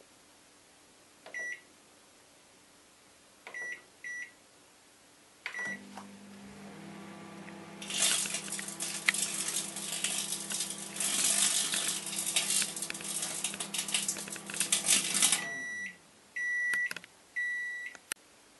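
Microwave oven beeping a few times, then running with a steady electrical hum while the three CDs inside arc, a dense, loud crackle of electrical sparks lasting about seven seconds. The oven stops and gives three longer beeps at the end of the cycle.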